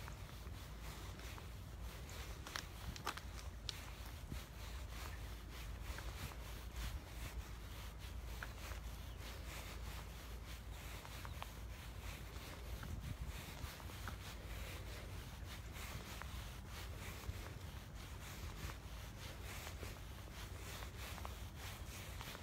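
Footsteps of a person walking outdoors, with rubbing and handling rustle, many faint scattered ticks, and a low steady rumble underneath.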